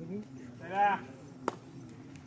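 A man's short, loud shouted call, rising and then falling in pitch, over a faint background of voices at a kabaddi match. About half a second later comes a single sharp slap.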